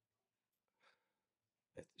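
Near silence in a small room, with one faint short breath about a second in; a man's voice starts again just before the end.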